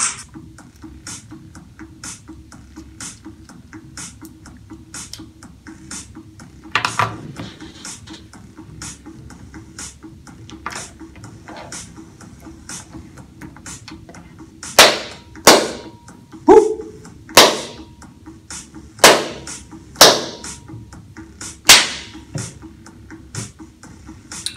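A series of about eight loud, sharp cracks, a second or so apart, in the second half, over a faint regular ticking about twice a second and a low steady hum.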